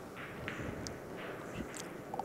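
Quiet room tone of a large hall: a faint steady hiss with a few soft, brief distant sounds, and no ball strike.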